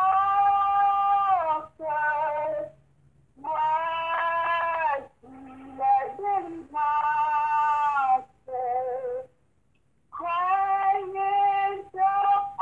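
A high voice singing a slow hymn-like melody in short phrases of long, held notes, with brief pauses between phrases.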